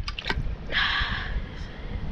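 A small fish released by hand into the water with a short splash, lasting about half a second and starting under a second in, after a few light clicks.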